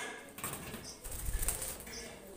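Green-cheeked conure flapping its wings as it flies off its perch to the cage wire, a short flurry of wing beats about a second in.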